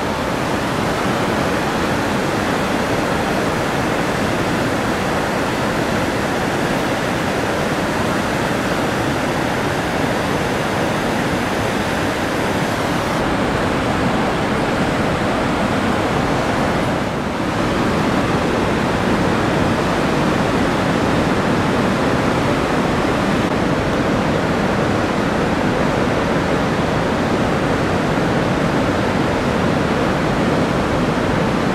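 The Rhine Falls: a steady rushing roar of water pouring over the falls, dipping briefly a little past halfway through.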